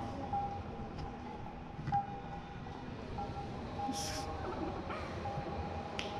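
Steady room noise in a hall, with a faint hum that comes and goes and a brief hiss about four seconds in.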